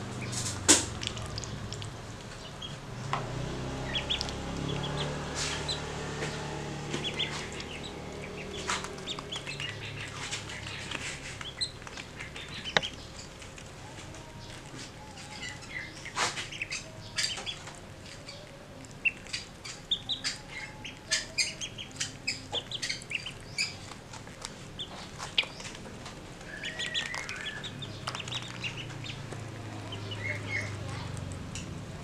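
Ducklings peeping in short high calls that come thicker and faster in the second half, with scattered sharp taps as they peck grain from a hand.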